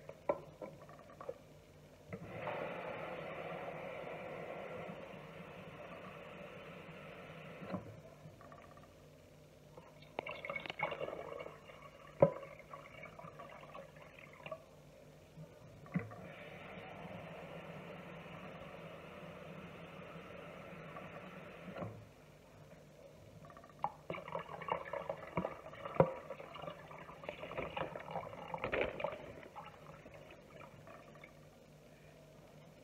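Water running steadily from a tap in two stretches of about five seconds each, with a few sharp knocks of handling in between. Near the end, water is poured from a glass measuring cup, splashing into a cooking pot.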